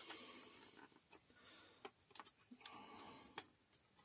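Near silence, with a few faint clicks and taps of hands handling the opened plastic housing and switch parts of a hand mixer.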